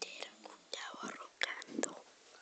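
A person whispering, with a few sharp clicks.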